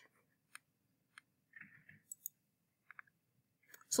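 A few faint, widely spaced clicks over near silence, typical of a computer mouse being clicked to advance a slide.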